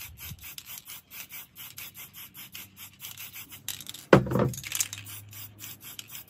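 Aerosol spray paint can hissing in short, rapid bursts, about six a second, as yellow paint is misted onto the board. About four seconds in comes a longer, steadier spray with a loud thump, then the quick bursts resume.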